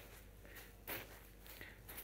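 Quiet room tone with a faint soft pat a little under a second in and a fainter one later: small bean bags filled with beans landing in the hands as they are tossed from hand to hand.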